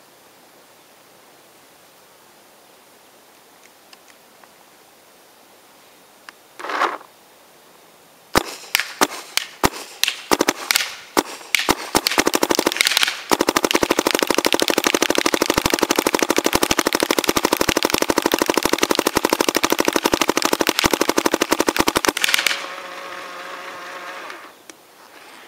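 Dye DM7 electronic paintball marker firing: after about eight quiet seconds, a few single shots, then a rapid unbroken stream of shots for about nine seconds that stops suddenly. A steady hum follows near the end.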